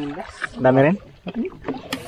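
Brief bits of a man's voice talking, with a single sharp knock just before the end.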